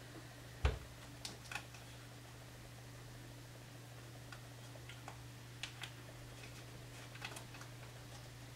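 Light scattered clicks and taps of hands handling a scrapbook album page while pressing a small gold star sticker onto a photo clip, with one louder knock under a second in, over a steady low hum.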